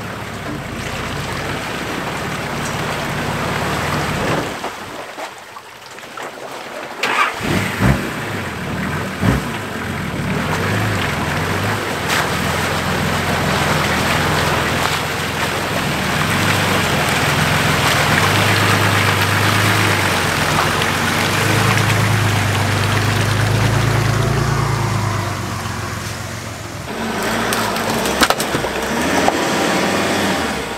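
Four-wheel-drive engine running under load as the vehicle crawls through a muddy boghole, with a few sharp knocks along the way.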